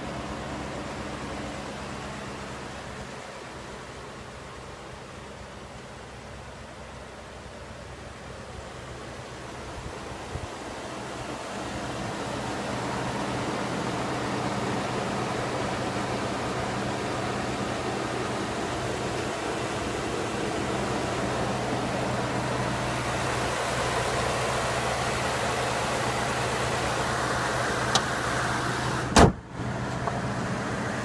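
Pickup truck engine idling, a steady low hum under background noise that grows louder about twelve seconds in. A sharp click comes about a second before the end.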